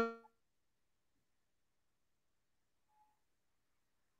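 A woman's voice cut off mid-word about a quarter of a second in, then dead silence: the video call's audio has dropped out.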